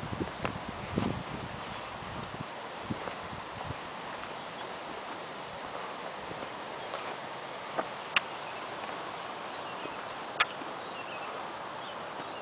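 Open-air mountain ambience with a steady hiss and the handling noise of a handheld camera being panned: a few low bumps in the first second or so, and sharp clicks about eight and ten seconds in.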